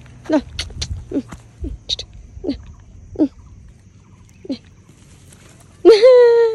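Monkeys squeaking: about ten short, quickly falling squeaks scattered over the first few seconds, followed near the end by a loud, drawn-out voice.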